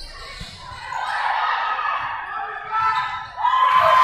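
Players and spectators shouting in an echoing gymnasium during a volleyball rally, with the thuds of the ball being played. One voice rises into a shout near the end.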